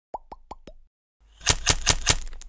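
Logo-animation sound effects: four quick bubbly pops, each with a short pitch slide, in the first second. After a short gap come loud, sharp crackling snaps at about five a second.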